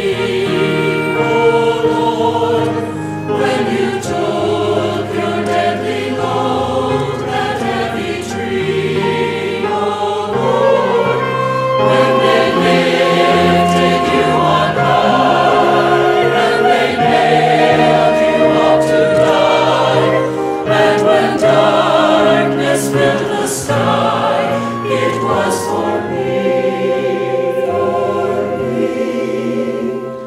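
A choir singing a hymn with accompaniment, in steady held phrases.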